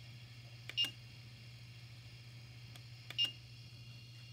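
Two short beeps, each with a click, from a 3D printer's control-panel beeper as a print is being started: one about a second in and one near the end. A steady low hum runs underneath.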